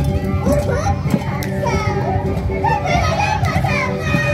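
Andean carnival band music: a drum beating under a steady held melody line, mixed with high-pitched voices and crowd chatter.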